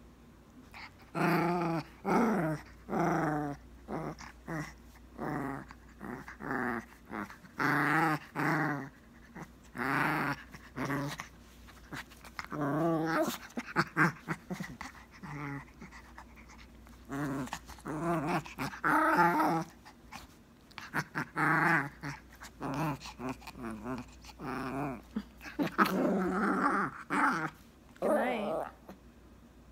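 A small Chinese crested dog play-growling in many short bursts, over and over, while play-biting at a person's hand.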